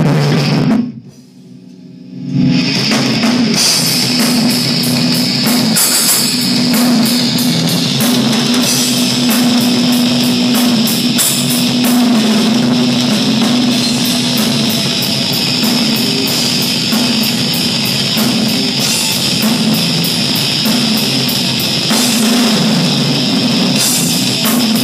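Live rock band playing loud: distorted electric guitar over a drum kit with busy cymbals. The band cuts out briefly about a second in, then comes back in full at about two and a half seconds and plays on steadily.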